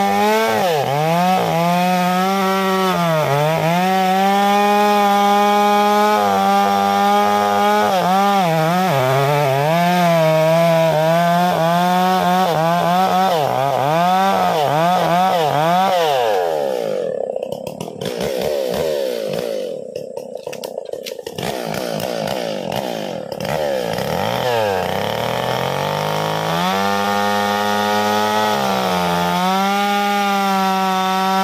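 Two-stroke chainsaw cutting through a thick tree trunk, its engine pitch dipping again and again under load. Just past halfway the engine bogs down to a much lower pitch for several seconds, then revs back up near the end as the cut goes through and a round of the trunk drops off.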